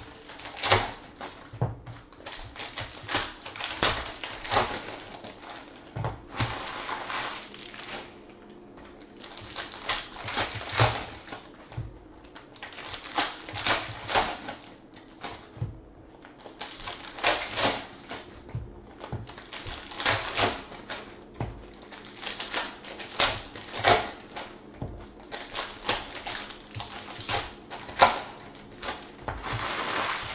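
Foil and plastic trading-card pack wrappers crinkling and tearing as packs are ripped open one after another, in crackly bursts of a second or two with short pauses between.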